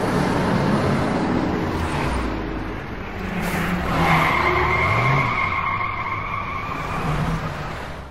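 Car sound effect: an engine running with tyres squealing, a steady high squeal setting in about halfway through and fading before the end.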